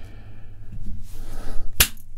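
A single sharp slap-like knock near the end, over a faint steady low hum.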